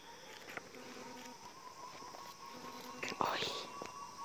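Hushed whispering, loudest in a brief burst a little past the middle, over quiet forest ambience. A short low hoot repeats about every two seconds, with a faint steady high tone behind it.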